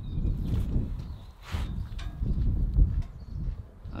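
Soft scrapes and knocks as a baked pizza is lifted and turned over on a wooden cutting board, with a brief scrape about a second and a half in and a light click soon after, over an uneven low rumble.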